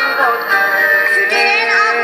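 Loud live band music with a lead singer, the voice gliding and bending between notes, heard from among the concert audience.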